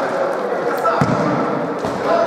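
Futsal players calling out in a reverberant sports hall, with the dull thud of the ball being kicked or bounced on the court about a second in and a few sharp clicks.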